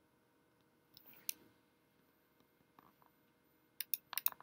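Faint computer mouse clicks over quiet room tone: a couple about a second in and a quick cluster of clicks near the end.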